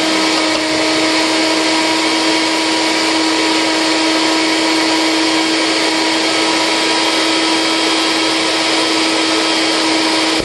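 A 250-watt NutriBullet blender motor running steadily at one constant pitch, a loud whine over a rushing hiss, as it blends frozen bananas, frozen blueberries and almond milk. The bananas have not thawed enough to blend easily.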